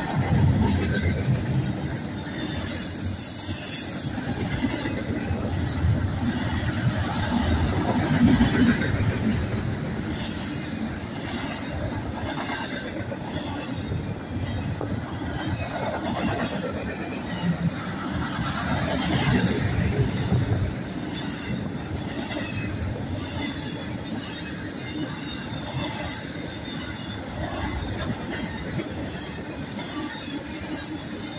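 Double-stack intermodal well cars rolling past on the rails: a continuous rumble and clatter of steel wheels, swelling and easing as the cars go by.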